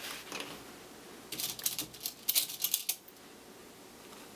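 Cotton fabric pieces being handled and pinned together: a soft rustle at the start, then a quick run of crisp crackling about a second and a half long.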